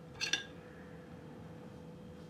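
A brief metallic clink about a quarter of a second in, as a serrated bread knife is picked up from beside the plates, over a faint steady hum.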